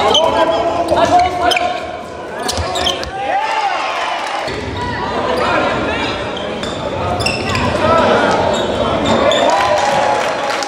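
Live high-school basketball play in a gym: the ball bouncing on the hardwood floor, sneakers squeaking in short glides, and players' and spectators' voices calling out, all with the echo of the hall.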